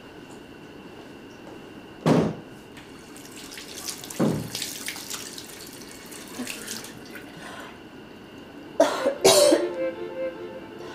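Water running from a tap into a washbasin, with splashing as hands are washed. Sudden loud sounds come about two and four seconds in, and a louder cluster near the end.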